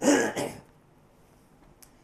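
A man clearing his throat into his fist: one short burst at the start.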